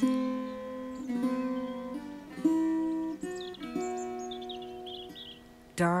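Acoustic guitar music: plucked notes ringing out one after another, a new note or chord about every second, dying away near the end.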